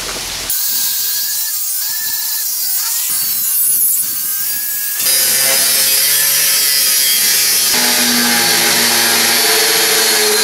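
Angle grinder cutting through the rusty steel tube frame of a wheelbarrow, a loud whine that wavers in pitch as the disc is loaded. The sound changes abruptly about half a second in and again about five seconds in.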